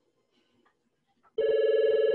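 A telephone ringing once: a short, loud, trilling electronic ring that starts past the middle and lasts just under a second.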